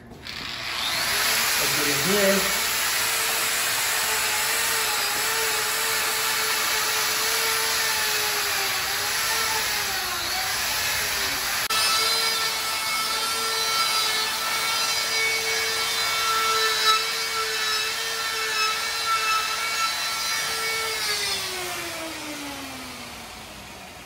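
Electric die grinder with a burr bit carving and smoothing the inside curves of an ice sculpture. It speeds up about half a second in to a steady whine, and the pitch wavers as the burr bears into the ice. Near the end it winds down with a falling pitch.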